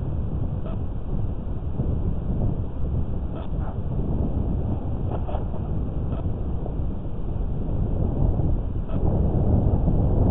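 Low, steady rumble of wind buffeting the microphone, with a few faint ticks scattered through it.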